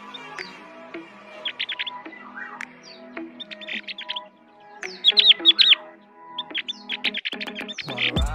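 Bird chirping in four bursts of quick, high chirps, the loudest about five seconds in, over soft background music with sustained notes.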